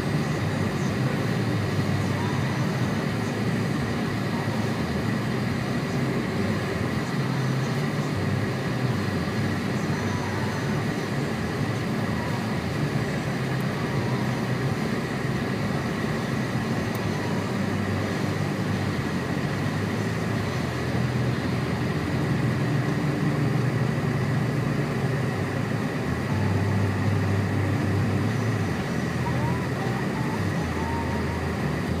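Steady car-cabin noise while driving on a slushy, snow-covered road: the engine's low rumble and the tyres on wet slush, with a thin steady whine running under it.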